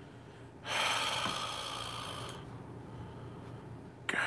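A person's long breath out close to the microphone, starting suddenly under a second in and fading away over about a second and a half.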